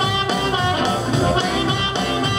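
Live blues-rock band playing a bar between sung lines: electric guitars and drums, with harmonica.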